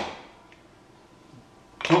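Mostly a quiet pause with faint room tone: a man's voice trails off at the start and starts again near the end.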